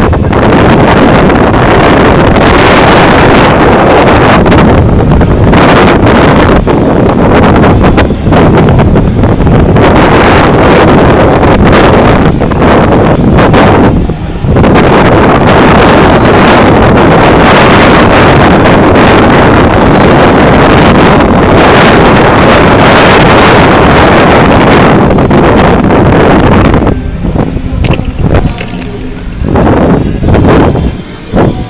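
Wind buffeting the camera microphone: a loud, gusty roar that surges and dips and eases near the end.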